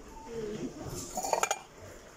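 Ceramic bowls and plates clinking together, a short cluster of clinks about a second and a half in.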